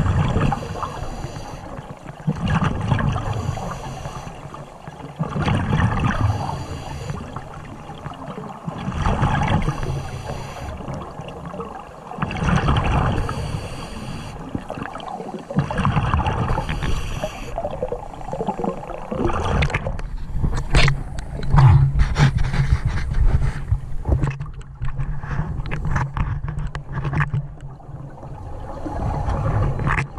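Scuba diver breathing underwater through a regulator, heard through the camera housing: a hiss on each breath and a rush of exhaled bubbles, swelling about every three seconds. From about two-thirds of the way in, sharp clicks and crackles join the breathing.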